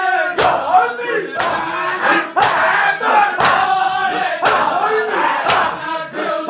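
A crowd of men doing matam, striking their chests in unison about once a second, with a mass of men's voices chanting and shouting between the strokes.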